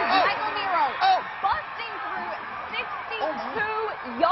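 Several voices shouting at once over a constant crowd din, the sound of a high school football game during a long scoring run.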